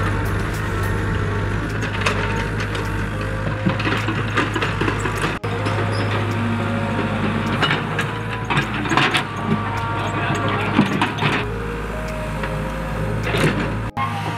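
Background music over the steady low running of a small tracked excavator's engine, with scattered short knocks from digging.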